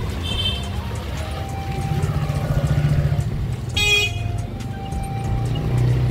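Low rumble of road vehicles running, with one short horn honk about four seconds in, under background music.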